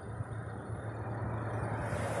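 A car's engine running with road noise as the vehicle moves along: a steady low hum under an even rushing noise, slowly getting louder.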